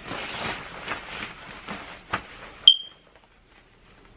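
Clothing rustling and shuffling as a pair of cargo pants is pulled on, with a small knock about two seconds in. Near the three-quarter mark comes one sharp metallic clink that rings briefly, after which it goes quiet.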